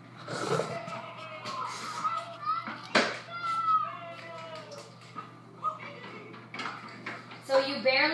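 Children's voices with background music, and a sharp click about three seconds in.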